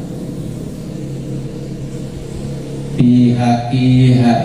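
A man's voice chanting Arabic text in long, held, melodic notes, the way a kitab passage is recited in a Qur'an-commentary lesson. It is quieter and steady for the first three seconds, then comes in loud about three seconds in.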